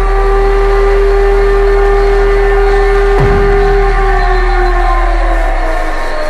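Dubstep track in a breakdown: one long held synth note over a deep sub-bass drone, the note sagging slightly in pitch near the end. A brief sweep cuts through about three seconds in.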